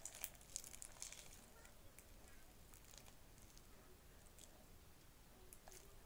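Faint, squelchy crackling of sticky, not-yet-finished homemade slime being squeezed and pulled apart between bare hands, mostly in the first second or so, then near silence.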